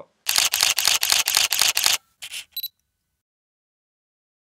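Camera shutter sound effect: a rapid burst of about a dozen shutter clicks lasting nearly two seconds, followed by two shorter sounds.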